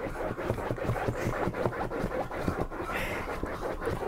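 Dog pawing and scratching at the fabric seat cushion of an upholstered armchair: a dense run of quick scratches, digging to fluff up the seat.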